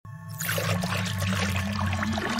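Animated-intro sound design: a liquid pouring and swirling effect over low, held musical tones.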